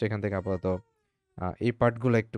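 A man's voice speaking in two short stretches, broken by a pause of about half a second near the middle.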